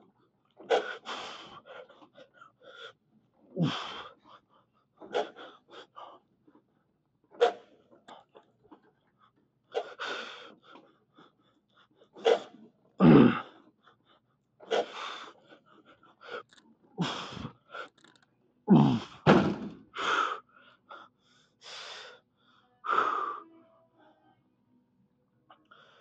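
A man breathing hard and forcefully through a set on a leg machine: short, sharp gasps and exhalations come every one to two seconds. A few, around the middle and later on, are deeper and louder, like strained grunts.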